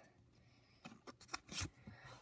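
Trading cards being slid and flicked over one another in the hand: a few faint light clicks about a second in, with a brief papery swish near the end.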